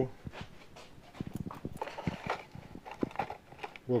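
Handling noise: a scatter of small irregular clicks and knocks as parts and the camera are moved about.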